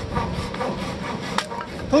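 Hand saw cutting through a wooden plank in steady back-and-forth strokes, with one sharp knock of wood about a second and a half in.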